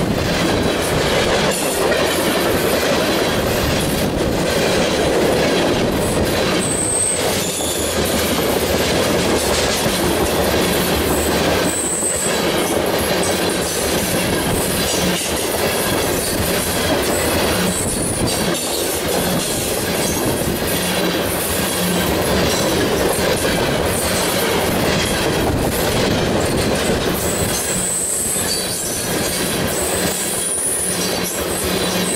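Freight train of new Bessemer and Lake Erie steel ore hopper cars rolling past close by: a steady loud rumble of wheels on rail, with several brief high-pitched wheel squeals scattered through.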